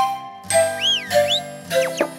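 A short cartoon music jingle: a few bright, tinkling notes, with swooping effects that rise and fall in pitch about half a second in.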